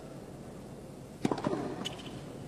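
Quiet tennis-stadium ambience. A little over a second in comes a quick, irregular cluster of sharp knocks, with a few fainter ticks after it.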